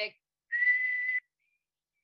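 A person whistling a single held note, about two-thirds of a second long and breathy, as a snatch of lonesome cowboy music.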